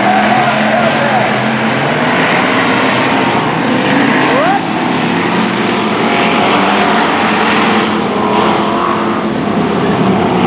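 Several hobby stock race cars running together on a dirt oval: a loud, steady drone of many engines at racing speed, with one rising rev near the middle.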